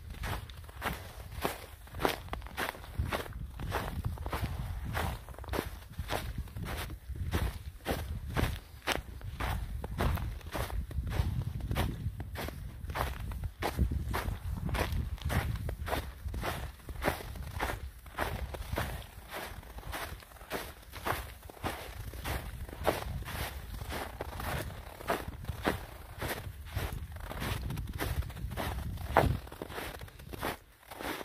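Footsteps crunching on a snow-covered trail at a steady walking pace, about two steps a second.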